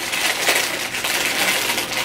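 Plastic candy bag crinkling and crackling as it is torn open and handled, a continuous dense crackle.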